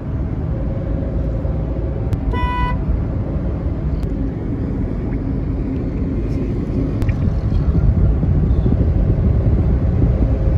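Road and engine noise heard from inside a moving car: a loud, steady deep rumble. A vehicle horn toots briefly about two and a half seconds in.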